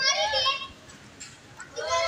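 Children's voices calling out, high-pitched, in one burst at the start and another near the end.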